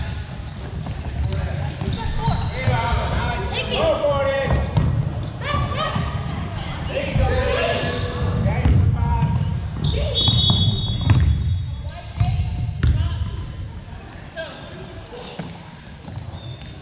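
Youth basketball game in an echoing gym: a basketball bouncing on the hardwood floor amid the shouts and chatter of players and spectators, with a brief high squeal about ten seconds in. The noise dies down over the last few seconds.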